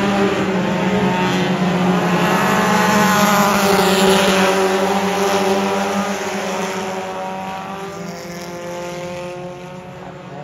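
A pack of mini stock race cars running on a dirt oval, several engines heard at once as they pass close by. They get louder to a peak about three to four seconds in, then fade away down the track.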